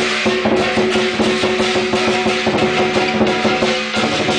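Chinese lion dance percussion: a large drum beaten in a rapid, steady beat with clashing cymbals ringing over it.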